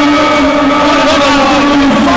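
A loud, steady horn-like drone with a few overlapping tones held throughout, over the noise of a stadium crowd.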